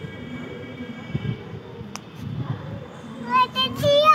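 A toddler's short high-pitched calls about three seconds in, then a louder squeal that rises and falls in pitch near the end. A faint steady tone hangs in the background during the first second or so.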